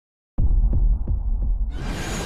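Deep pulsing bass hits, about three a second, of an animated intro's sound design, starting about a third of a second in; near the end a bright whooshing swell rises over them.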